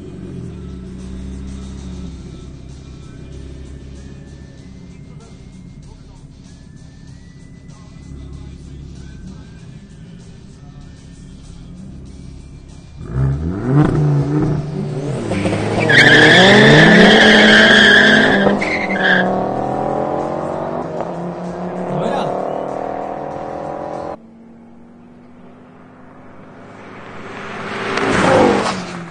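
Two Ford hatchback engines idling at the drag-race start line, then launching about 13 seconds in: engines rev up through the gears, with a loud high tyre squeal a few seconds into the run. The sound cuts off sharply near the end, then a car rushes past close by.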